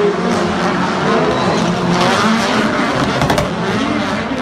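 Turbocharged rallycross supercar engines at race speed, revving up and down through gear changes, with one sharp crack about three seconds in.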